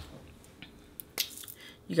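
A single sharp click about a second in, then a brief scrape: a mechanical brow pencil's cap being pulled off.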